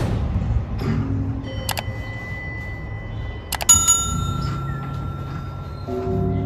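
Subscribe-button animation sound effects: a whoosh at the start, then a click about two seconds in with a short ring, then a second click with a bell ding that rings on and fades over the next couple of seconds, over a low steady background.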